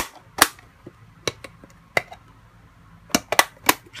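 Sharp clicks and knocks of hard plastic parts of a Tamiya Portable Pit storage box being handled: a loud click at the start, another about half a second later, a few scattered taps, then a quick run of several clicks near the end.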